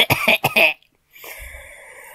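A person coughing in a quick run of short, loud bursts, followed by a softer, breathy noise.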